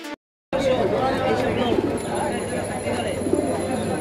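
Background music cuts off, then after a brief silence comes the steady chatter of a busy outdoor bird-market crowd, with caged pigeons cooing close by.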